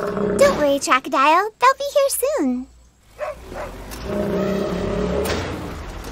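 A cartoon character's wordless, growly vocalising that glides up and down in pitch and warbles rapidly over the first couple of seconds. Soft background music with held chords comes in about four seconds in.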